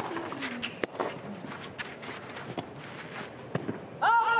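Hushed tennis stadium crowd between points, with a few sharp taps of a tennis ball, the loudest just under a second in, against a low murmur.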